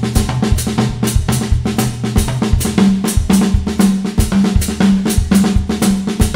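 Drum kit played in a steady repeating groove: a bass-drum foot pattern and a left-hand pattern on the drums, with the right hand adding strokes on beats one and three of each measure, a limb-independence exercise. Sharp strikes follow one another several times a second without a break.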